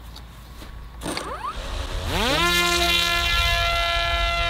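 The Parrot Disco fixed-wing drone's electric motor and rear propeller spinning up about a second and a half in: a rising whine that levels off into a loud, steady buzz at full throttle for a hand launch.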